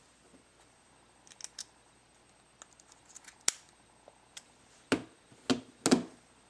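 Small sharp clicks of a micro-SIM card and its metal tray being fitted into an iPhone 4. Near the end come three louder knocks as the phone is handled on a wooden table.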